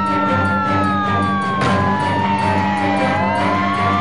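Fire engine sirens wailing, the pitch rising and falling slowly, with more than one tone gliding at once, over a steady low drone.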